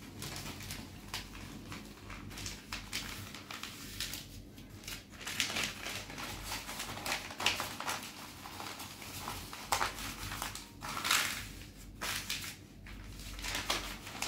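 Newspaper sheets rustling and crinkling as they are folded and creased flat by hand, irregularly, with a few louder rustles along the way.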